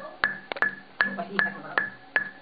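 Metronome click track ticking evenly at about two and a half beeps a second over a low held note from the studio playback, with no bass yet audible.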